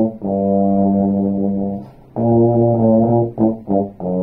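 Bass trombone playing a slow low-register study: long sustained low notes, a brief breath pause about two seconds in, then two short notes leading into another held note at the end.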